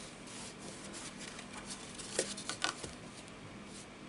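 Cardstock being handled on a craft mat: the card sliding, rubbing and rustling as it is turned over and opened, with a few sharp crisp paper crackles a little over two seconds in.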